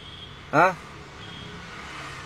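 Low steady background noise inside a car cabin during a pause in speech, with a man's short "haan" about half a second in.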